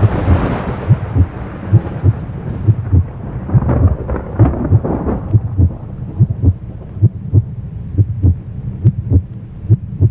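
A deep rumble that comes in suddenly and loudly, easing over the first few seconds, with many low thuds at uneven intervals, about two or three a second.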